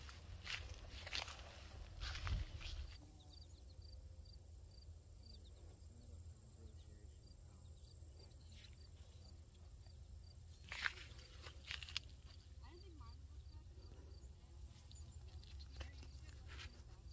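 Quiet outdoor field ambience under a steady low rumble: a few footsteps and rustles through the plants in the first few seconds and again around eleven seconds in, and a faint high chirp repeating about twice a second.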